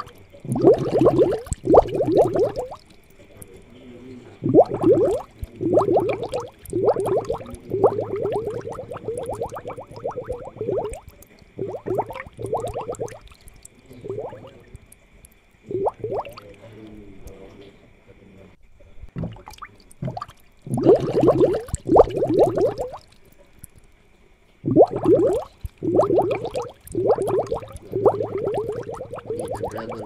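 Aquarium aeration bubbling and gurgling in irregular bursts of a second or two, dense with small bubble pops, over a faint steady high hum.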